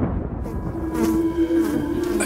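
A fly buzzing: a steady hum comes in about half a second in, over the fading low rumble of a deep boom.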